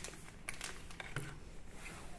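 Faint small clicks and light rustling from hands handling packaged items: a toothbrush in a plastic blister pack and a small cardboard box.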